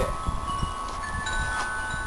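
Wind chimes ringing, several high tones overlapping, with new ones sounding about halfway through, over a low rumble.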